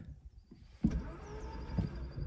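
Škoda Octavia's ignition key turned with the car in gear: a click about a second in, then a faint steady electric hum and whine, but no starter cranking. The car's clutch interlock blocks the starter because the clutch pedal is not pressed.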